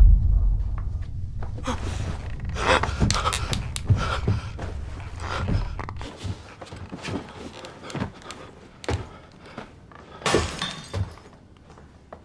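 A deep rumbling boom fading away, then a run of knocks, thuds and clattering, breaking crashes in a room, loudest around three seconds in and again near the end.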